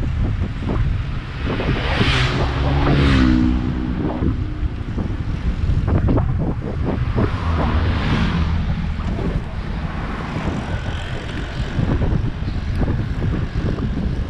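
Wind rushing over the microphone of a camera carried on a moving road bike, a steady low rumble. It swells about two to three seconds in with a pitched engine note gliding down and up as a motor vehicle passes, and swells again near the middle.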